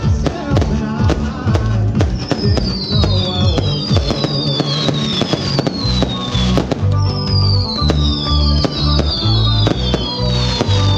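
Aerial fireworks bursting, a quick run of bangs and crackles over loud music with a steady bass beat. Several falling whistles sound from about two seconds in.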